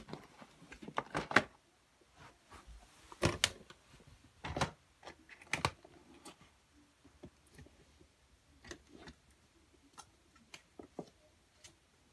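Irregular close knocks and clicks of things being handled, the loudest few in the first six seconds, then lighter scattered taps.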